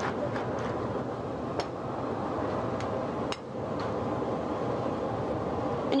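A fork mashing and stirring soft herb butter in a glass bowl, with a few light clinks of the fork against the glass, over a steady rushing background noise.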